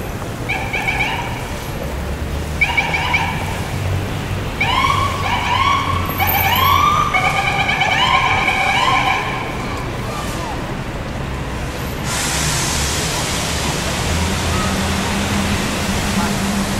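Emergency vehicle siren giving short rising-and-falling whoops, several overlapping in the middle, over a low rumble of city traffic. About twelve seconds in the siren has stopped and a louder steady hiss of street noise takes over, with a low engine hum near the end.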